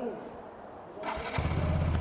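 Bajaj Pulsar RS200's single-cylinder engine being started on the electric starter about a second in, catching almost at once and settling into a steady idle.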